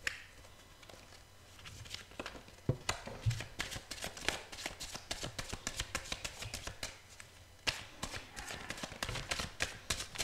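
Hand shuffling a deck of Osho Zen tarot cards: rapid runs of card flicks and clicks, with a louder snap about three-quarters of the way in, as a couple of cards slip out of the deck onto the cloth.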